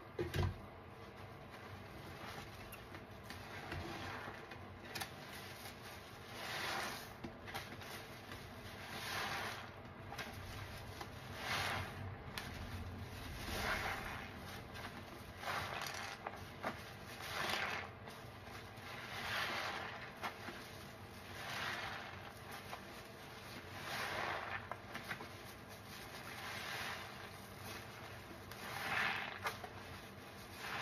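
Soapy kitchen sponges squeezed by hand in a basin of sudsy water, a wet squelch of foam about every two seconds.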